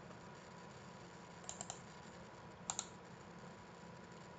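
Faint clicks of computer keys: a quick run of about three clicks around a second and a half in, then two more a little before the three-second mark.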